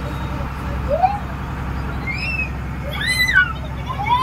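Tour boat's engine running steadily with a low, even drone. A few brief voices call out over it.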